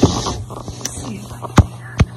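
Handling noise from a phone camera being picked up and moved: a thump at the start, a small click, then a sharp knock about a second and a half in, the loudest sound.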